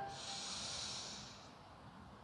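The tail of a held Om chant fades out, then a breath is drawn in through the nose as a soft hiss lasting about a second before it dies away.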